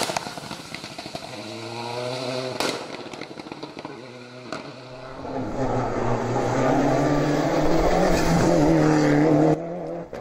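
Rally car engines running hard on a wet tarmac stage, revs rising and falling through gear changes across several passes, with a sharp crack about two and a half seconds in. The loudest pass, a Mitsubishi Lancer Evo, comes in past the middle and cuts off abruptly near the end.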